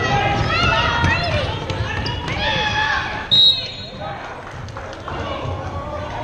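A referee's whistle: one short, shrill blast about three seconds in, the loudest sound. Before it, shouting voices and a basketball bouncing on the hardwood court.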